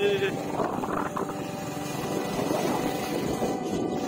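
Motorcycle engine running steadily, with a rapid even beat throughout.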